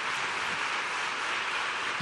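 Congregation applauding, a steady clapping that holds an even level.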